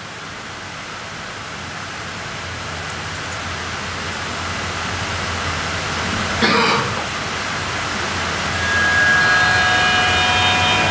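Hiss from the video trailer's soundtrack fading in, growing steadily louder. Held musical tones come in near the end. One short cough sounds about two-thirds of the way through.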